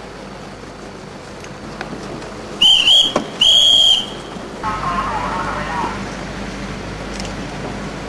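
A whistle blown in two loud, shrill blasts about three seconds in, the second one longer.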